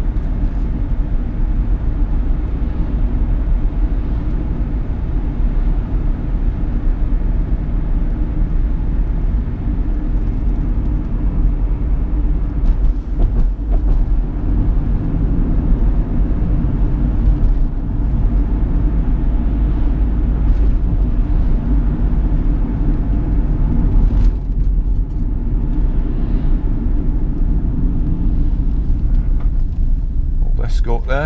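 Inside the cabin of a 2010 Chevrolet Captiva 2.0 VCDi turbodiesel on the move: a steady low engine drone mixed with tyre and road rumble.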